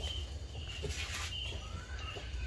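Lumps of charcoal shifted and set by hand in a stove's firebox, with a brief scrape about halfway through. Faint short high chirps sound now and then over a steady low hum.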